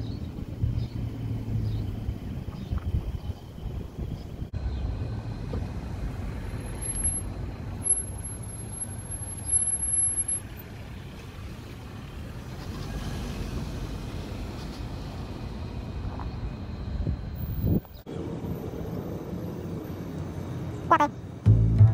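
Street traffic: the engines and tyres of cars passing and idling close by on a city street, with a thin high whine for a few seconds in the middle.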